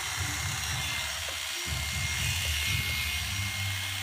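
Oster electric hair clippers running with a steady hum as they shave long hair off close to the scalp. The hum breaks off briefly about one and a half seconds in.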